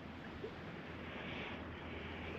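Faint, steady outdoor background hiss with no distinct events, the kind of even noise that a light breeze or a nearby stream gives.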